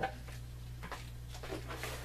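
Paper being handled on a table: a small piece of patterned paper stuck with double-sided tape is pulled up and moved, with a short click at the start and a few faint rustles about a second in and near the end, over a steady low hum.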